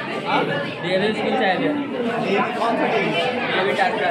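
Several people talking at once, overlapping chatter in a room.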